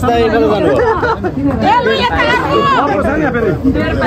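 Several people talking at once: the loud, lively chatter of a small gathering.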